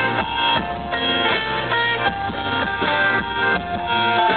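Live rock band playing an instrumental passage with no vocals, strummed guitar to the fore over a steady beat.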